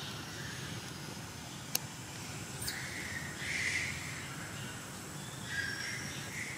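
Outdoor ambience: a steady low background noise with a few faint, short high chirps in the middle and near the end, and one sharp click a little under two seconds in.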